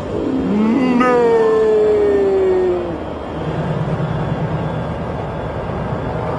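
A long drawn-out cry that starts about a second in and falls slowly in pitch for about two seconds, followed by the steady low rumble of a school bus engine.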